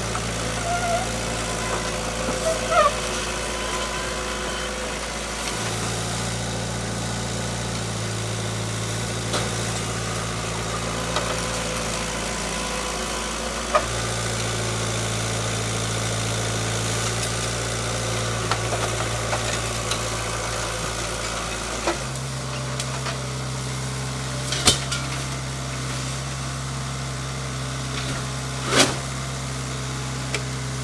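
Petrol engine of a Vermeer S800TX compact tracked mini skid steer running steadily, its pitch stepping to a new speed a few times as it works. A few short knocks and clanks sound over it.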